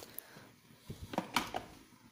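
Plastic and metal plunger lid of a glass French press being set onto the carafe: a few light clicks, the sharpest two close together about a second and a half in.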